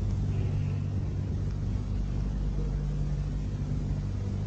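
Steady low hum with a layer of hiss, the background noise of an old sermon recording, unchanged from start to finish.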